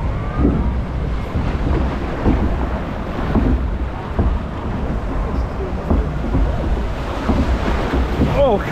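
Water rushing and splashing around a log flume boat as it floats along the channel, with steady wind buffeting on the microphone and scattered knocks of water against the hull.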